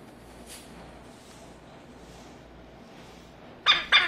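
Parrot feeding from a stainless steel food cup: quiet for most of the time, then a quick cluster of three short, sharp, loud sounds near the end.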